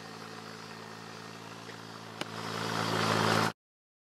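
An engine running steadily with an even hum; about two seconds in there is a single click, after which a rushing noise swells louder for a second or so until the sound cuts off suddenly.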